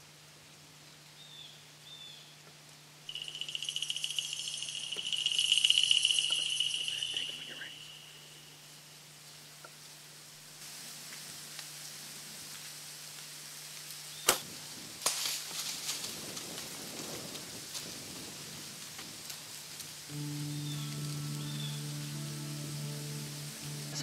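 A single sharp snap of a Mathews compound bow being shot, about halfway through, followed by several seconds of rustling in dry leaves as the deer runs off. Earlier there is a loud hiss with a high whistling tone lasting a few seconds, and steady music comes in near the end.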